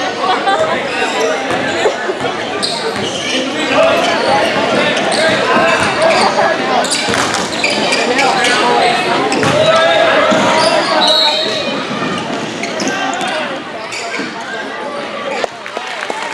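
Basketball game in a gym: many indistinct voices of players and spectators calling out, over a basketball bouncing on the hardwood court, with the echo of the hall.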